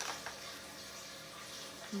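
Faint, steady trickle of water circulating in a Tower Garden hydroponic tower, with a small click of a paper seed packet being handled at the start.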